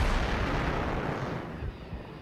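An explosion going off suddenly and loudly, then a rumbling roar that slowly dies away over about two seconds.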